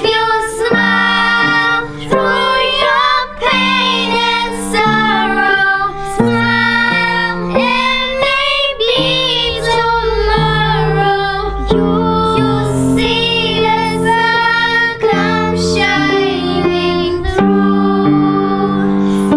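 A group of young girls singing a song together, accompanied by chords on an upright piano.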